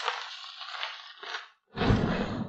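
Dyed chalk cubes crumbling and crunching as they are squeezed in the hands, thinning out. After a brief gap, a heavy thud comes near the end as the hands press into the pile of chalk powder.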